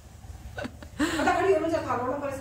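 Mostly speech: a woman's voice saying a short word about a second in, preceded by a couple of brief vocal sounds a little after half a second.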